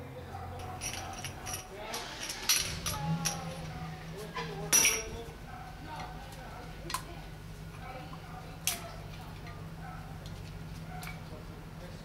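Metal clinks and taps of a brake caliper piston compressor tool being worked against and removed from a brake caliper, a few sharp clinks standing out. A low steady hum runs underneath.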